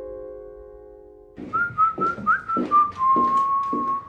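A held electric-piano chord fades out, then about a second and a half in a whistled tune starts over light, uneven taps, settling into one long held note near the end.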